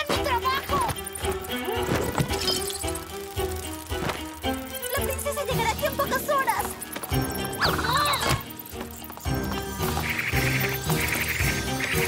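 Cartoon soundtrack: background music mixed with short wordless vocal sounds and sudden sound-effect hits. Near the end there are three brief bright sound effects.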